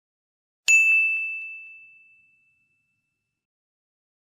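A single bright ding, a bell-like sound effect, struck once about two-thirds of a second in and ringing out over about a second and a half.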